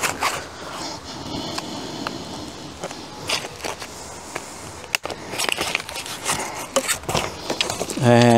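Foam packing padding being pulled and rubbed off an e-bike's frame and handlebars, a steady scraping and rustling with scattered sharp clicks, the strongest about five seconds in.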